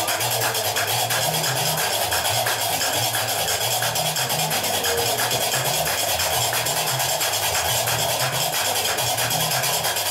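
Gnawa music: qraqeb, iron castanets, clattering in a fast, even rhythm over a repeating deep bass line from the guembri, the three-stringed bass lute of the maâlem.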